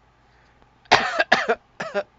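A man coughing, three loud coughs in quick succession starting about a second in.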